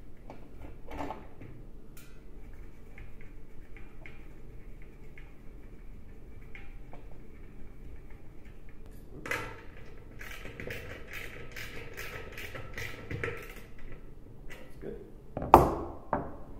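Light ticks and taps of a hand wrench working the screws that hold the plastic rear reflector dish to the radio as they are re-tightened, with a quick run of clicks from about nine to thirteen seconds in. A single sharp knock, the loudest sound, comes near the end.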